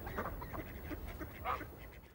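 Waterfowl calling faintly on a lake: a few short calls over quiet outdoor ambience, the clearest about one and a half seconds in.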